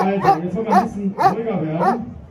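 A German Shepherd police dog barking repeatedly on its leash, about five barks at roughly two a second, over a sustained voice.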